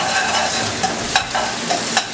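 Eggs and chicken sizzling steadily in hot oil in a frying pan, with a few sharp clicks and scrapes of a metal spatula as the egg is stirred and broken up.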